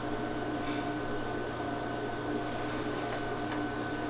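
Steady room tone: a constant low hum with a thin, faint high tone that comes in a moment after the start.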